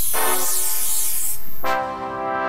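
Aerosol spray can hissing for about a second and a half, then cutting off, over background music holding sustained notes.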